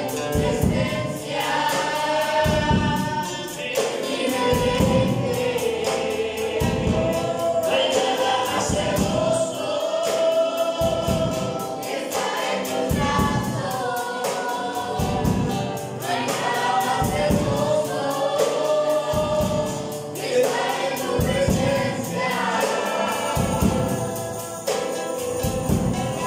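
A worship song sung by several voices to a strummed acoustic guitar, with a steady beat.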